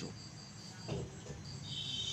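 Faint, steady high-pitched insect trill in the background, with a second, slightly lower trill joining near the end.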